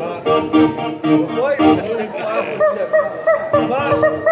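Electric guitar and bass played live through amplifiers, a short run of held notes followed from about halfway through by rapid, honk-like up-and-down pitch swoops.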